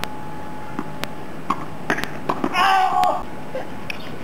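Tennis ball knocks: a handful of sharp, irregular bounce or racket-hit clicks on a hard court, and a brief high-pitched voice call about two and a half seconds in, the loudest sound.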